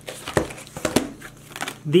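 Packaging crinkling and rustling in short, sharp crackles as items are pulled out of an opened parcel by hand.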